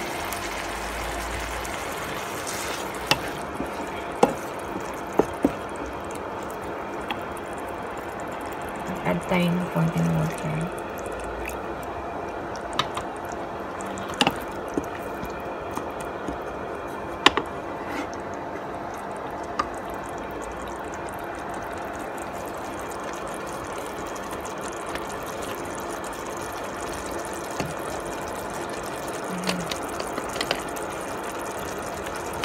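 Tomato and sardine sauce simmering in a nonstick pan, a steady bubbling hiss, with a few sharp taps and clicks of a wooden spatula against the pan.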